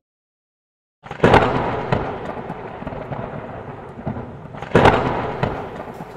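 Two sudden loud bangs about three and a half seconds apart, each fading into a long crackling tail, starting about a second in: a fireworks-like intro sound effect.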